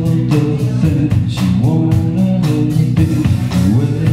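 Live rock band playing: drum kit keeping a steady beat under electric bass and electric guitar, with a male voice singing.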